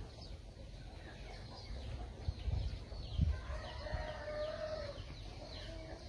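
A rooster crowing once, one long call starting about three and a half seconds in, over small birds chirping throughout.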